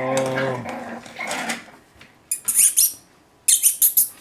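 Westie puppy squeaking: two short bouts of thin, high-pitched squeaks with quick falling notes, about two and a half seconds in and again near the end.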